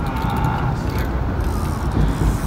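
Steady rumble of road traffic crossing the bridge overhead, an even noise without distinct events.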